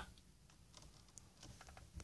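Near silence inside a parked vehicle's cabin: faint room tone with a few small faint clicks in the second half.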